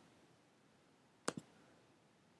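Near silence broken by two sharp clicks in quick succession a little past halfway through.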